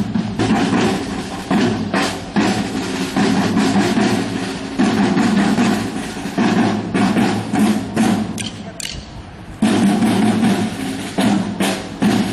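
Marching drum corps playing snare and bass drums in a steady, driving rhythm. The drumming fades a little about eight seconds in, then comes back loud about a second and a half later.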